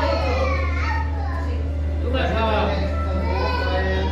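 Voices talking, with high-pitched voices that may be children's, over a steady low hum.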